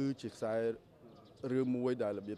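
A man speaking Khmer in short phrases.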